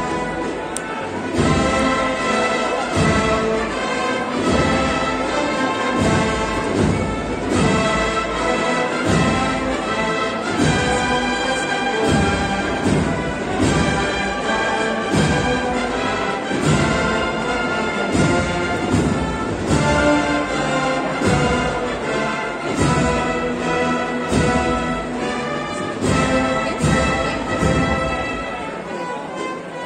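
An Andalusian agrupación musical (a processional band of brass, flutes and drums) playing a march over a steady drum beat. It grows louder about a second in.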